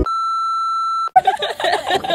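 A steady, high-pitched electronic beep lasting about a second that cuts off suddenly, followed by voices and bustle.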